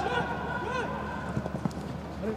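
Footballers' boots pounding the grass as they sprint on a counterattack, with players' short shouted calls and a few sharp knocks in the second half. No crowd noise: the stands are empty, so the pitch sounds carry plainly.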